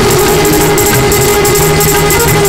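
Live folk-style music with a violin holding long bowed notes over a steady percussion beat, and the audience clapping along.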